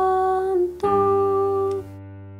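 Hymn accompaniment on an electronic keyboard: a long held chord, then a new held chord about a second in that cuts off near the end, leaving a faint low sustain.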